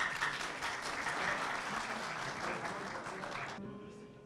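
Audience applauding, breaking out at once and stopping about three and a half seconds later.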